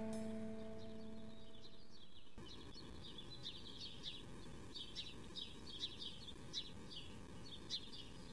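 The last guitar chord of a song rings and fades out over the first two seconds or so. Then faint birds chirp, with short high chirps repeating irregularly.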